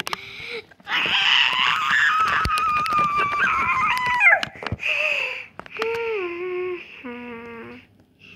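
A child's voice making wordless squealing and whining noises. A long, raspy, high squeal runs for about three seconds and ends in a quick up-and-down glide, followed by a few shorter, lower whines.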